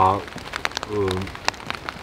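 Scattered, irregular light ticks and taps, like drops falling onto dry fallen leaves, under a man's brief word at the start and a short hesitating "eh" about a second in.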